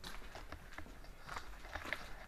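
Footsteps on a gritty floor: irregular crunches and clicks, a few a second.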